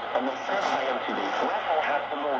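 A voice from a shortwave broadcast on 5950 kHz playing through the Tecsun PL-990x's speaker, thin-sounding with a steady hiss of static behind it.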